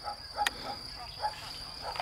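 Crickets trilling steadily on one unchanging high note, with a single faint click about half a second in.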